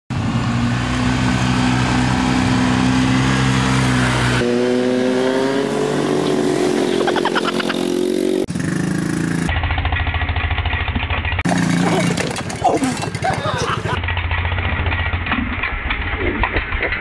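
Small four-wheeler (ATV) engines running and revving over several abrupt cuts, the pitch rising as the throttle opens in the middle section.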